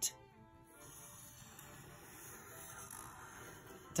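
Quiet background music with the faint scratch of a felt-tip permanent marker drawing on paper.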